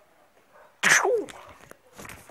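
A man's mouth-made gunshot sound: one sudden loud blast about a second in, dropping in pitch as it fades, voiced while he aims a toy shotgun.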